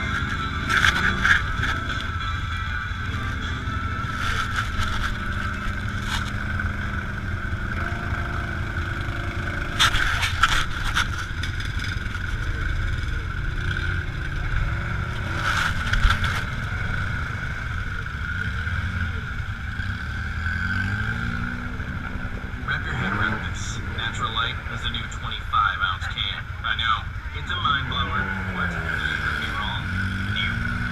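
Side-by-side UTV engines running in a mud bog, with a steady high whine over the engine hum and the revs rising and falling in the second half as a machine pushes through deep mud. A few sharp knocks come about 1, 10 and 16 seconds in, and voices are in the background.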